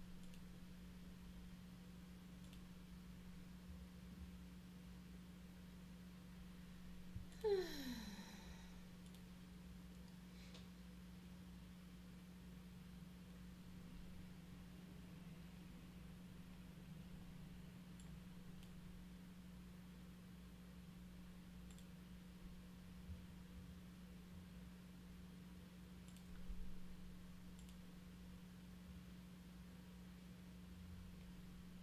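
Near silence: open-microphone room tone with a steady low hum. About seven seconds in there is one brief sigh that falls in pitch, and a few faint clicks come later.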